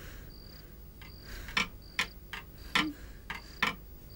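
A cricket chirping, one short high chirp about every three-quarters of a second. From about a second and a half in, a series of sharp, irregular clicks comes in over it and is the loudest sound.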